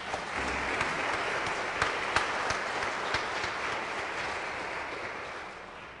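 Audience applauding: a dense patter of hand claps that starts just as the music stops, with a few sharper single claps standing out in the middle, then fades away toward the end.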